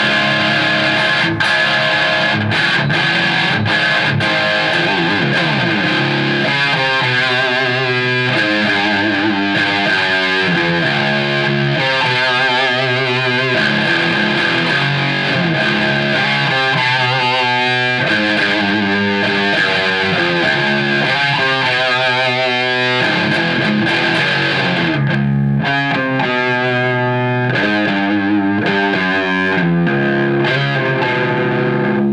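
Chapman ML2 electric guitar played through an early-'90s Mesa Boogie Dual Rectifier tube amp at high gain: continuous heavily distorted riffs and lead lines, with vibrato on several held notes.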